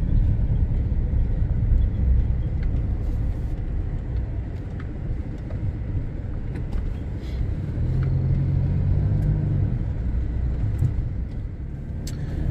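Car cabin noise while driving slowly: a low, steady rumble of engine and tyres on block-paved streets. About eight seconds in, a steadier engine hum comes up for a couple of seconds, then eases.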